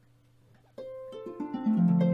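Large concert harp starting a piece: near silence at first, then the first plucked note about three-quarters of a second in, followed by more ringing notes that grow louder toward the end.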